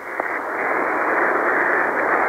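Shortwave receiver hiss on 8761 kHz in single sideband after the voice transmission stops: an even band-limited rush of static with a muffled, narrow sound. It swells over the first half second, then holds steady.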